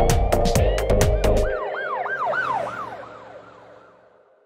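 Drum-backed song music stops about one and a half seconds in, leaving a police car siren sound effect. The siren is a fast up-and-down yelp, about four swoops a second, that fades away.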